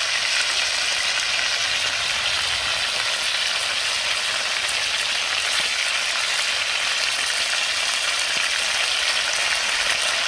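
Fish frying in hot oil in a pan, a steady, even sizzle.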